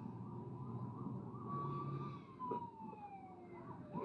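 Police car siren from a film soundtrack playing in the room, heard faintly: a steady wail that, about two seconds in, falls in pitch as the police cars pass.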